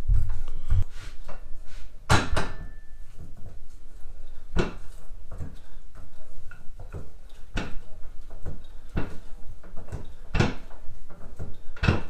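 Daytona 3-ton low-profile hydraulic floor jack being pumped with its handle, the lifting arm rising: a metal clunk at each stroke, about one every second and a half, with lighter clicks between.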